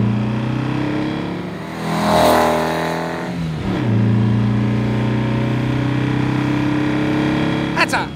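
1966 Volkswagen Beetle's 1776 cc air-cooled flat-four engine under hard acceleration, heard from inside the cabin. The engine note drops sharply about three and a half seconds in at a gear change, then climbs slowly again.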